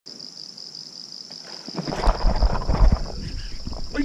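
Insects chirring in a steady high-pitched drone. From about two seconds in, louder low rumbling buffets and knocks on the microphone come in over it.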